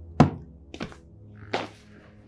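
Three dull thuds, the first and loudest just after the start, then two more at intervals of about two-thirds of a second, over soft background music.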